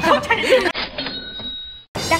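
Women's laughing voices for under a second. They give way to a short edited-in sound effect of steady ringing tones, which fades out just before a cut.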